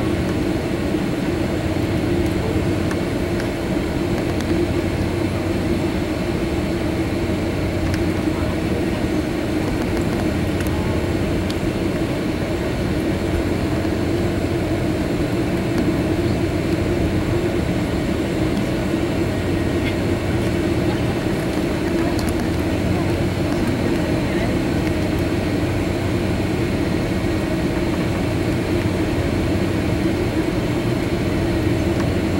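Steady engine drone of a Boeing 757-300 heard inside the passenger cabin as the jet taxis at low power, with an even hum that does not rise or fall.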